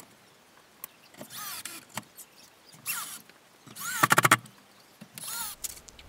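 Cordless drill running in four short bursts, its motor whine rising and falling in pitch each time, with a few clicks between bursts; the third burst, about four seconds in, is the loudest. This is typical of driving screws to mount a shower valve into wall framing.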